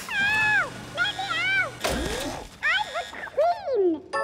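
Cartoon sound effects of a toy-wrapping machine at work: a string of squeaky whistle tones gliding up and down, with a whoosh and a low thump about two seconds in.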